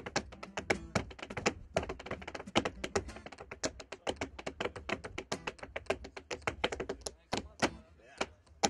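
Tap shoes striking a portable tap board in a fast, irregular run of sharp taps, several a second, with an acoustic guitar strummed along underneath.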